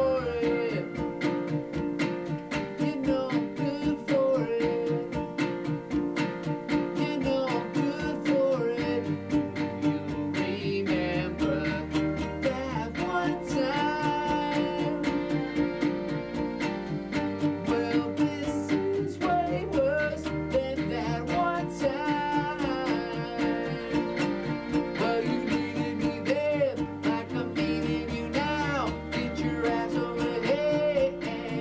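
A man singing a song while strumming a small electric guitar played through a small portable amp. From about nine seconds in, a low bass line runs underneath, changing note every couple of seconds.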